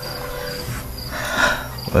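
Crickets chirping in the background: short high chirps repeating about every half second. A brief soft hiss swells and fades about one and a half seconds in.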